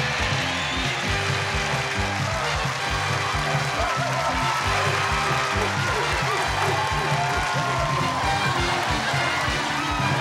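Upbeat entrance music with a steady, fast beat over a bass line and melody.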